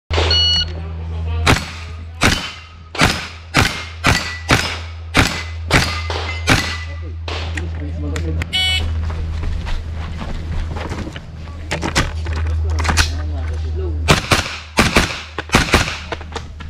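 Rifle shots fired one after another, about one every half second to second, then a break and a second quick string near the end. A short beep sounds about halfway, over a steady low hum.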